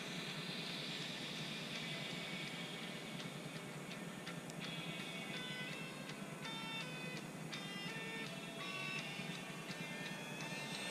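Distant hum of a radio-controlled Corsair's brushless motor and propeller in flight, under a steady hiss. From about four and a half seconds in there is a quick run of short, high beeping tones that step up and down in pitch.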